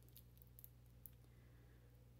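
Near silence: room tone with a steady low hum and a few faint clicks from a plastic marker being turned in the fingers.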